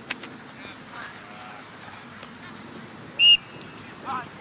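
One short, sharp referee's whistle blast about three seconds in, over faint sideline voices. A brief knock comes just after the start.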